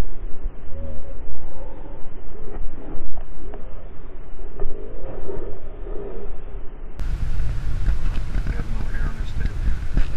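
Low rumble of a car's engine and road noise heard from inside the moving cabin, with indistinct voices. About seven seconds in, the sound changes abruptly to a louder, fuller rumble.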